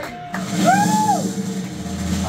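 Live rock band with drums, bass and electric guitar holding sustained notes; one high note slides up, holds and falls back down, and a low bass note comes in near the end.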